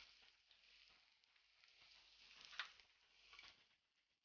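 Near silence: a faint hiss of onions and spices frying in a pan, with one faint tap about two and a half seconds in.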